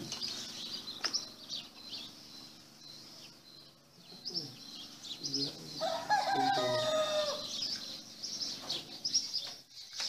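A rooster crowing once, about six seconds in, a call of roughly a second and a half that falls away at its end, over continuous high chirping of small birds.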